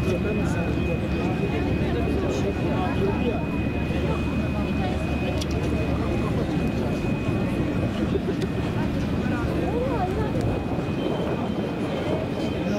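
Many people talking at once, with no single voice standing out, over a steady low rumble. A constant thin high whine runs underneath.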